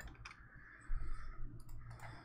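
A few light clicks of a computer mouse, with a soft low thump about a second in.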